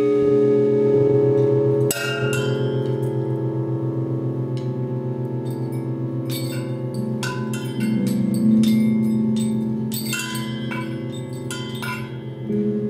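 Live instrumental band playing a slow, sustained passage: a steady, pulsing low drone and held tones, with scattered metallic, bell-like percussion strikes that ring on. The strikes come thickest about two seconds in and again from about seven to eleven seconds in.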